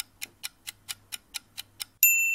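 Clock-like ticking countdown sound effect: short, even ticks at about four to five a second.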